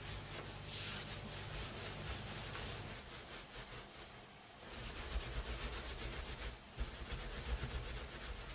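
Hands rolling wet, soapy wool back and forth on a terry towel, a soft rapid rubbing as the fibres are wet-felted into a cord. The rubbing dips into a short lull about halfway through, then picks up again.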